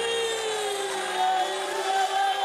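A woman's long, held crying-out voice during prayer, slowly falling in pitch, over live church band music in a large hall.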